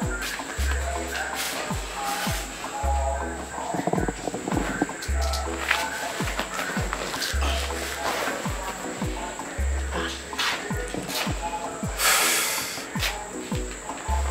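Background film-score music: a deep bass note pulses about every two seconds under regular drum beats and a repeating mid-range figure. A brief hissing swell comes near the end.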